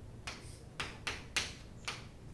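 Chalk writing on a chalkboard: five short, sharp strokes and taps as a curved arrow and a letter are drawn, the loudest about one and a half seconds in.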